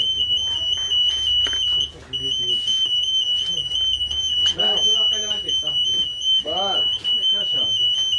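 A high-pitched electronic alarm tone sounds without letup, pulsing quickly, with a brief break about two seconds in; voices talk under it.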